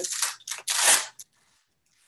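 Rustling and scraping of fabric safety gear being handled, as a few noisy bursts in the first second, the loudest just before it stops.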